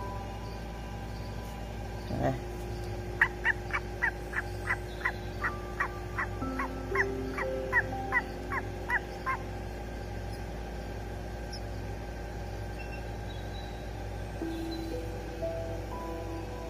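Newborn owlets peeping in a quick run of short, high, falling cheeps, about three a second for some six seconds: food-begging calls while they are fed meat from tweezers. Soft background music with held notes runs underneath, and there is a single light knock just before the calls.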